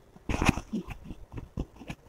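Wire whisk beating milk into a thick batter in a steel bowl, the wires clicking and scraping irregularly against the metal, with a louder burst about half a second in.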